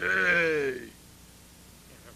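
A single bleat-like cry with a quick waver, falling in pitch and lasting just under a second.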